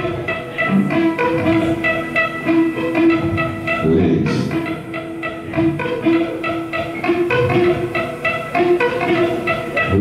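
Live rock band playing an instrumental passage: electric guitar picking quick repeated notes over drums and bass, with a held note sustained underneath.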